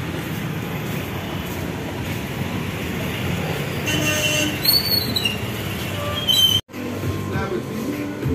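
Busy town street traffic: a steady rumble of passing buses, trucks and motorbikes, with short high horn toots a few seconds in and again near the end. Near the end it cuts off suddenly and gives way to voices in a shop.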